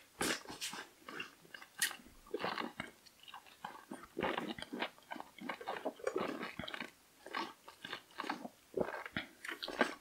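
Wet slurping and sucking of soda drawn up through thin plastic aquarium tubing held in the mouth, with swallows, in short irregular sips with brief pauses between.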